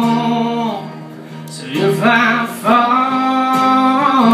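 A young man singing long, held notes of a country ballad over his own acoustic guitar. The voice drops away briefly about a second in, then comes back and holds another long note.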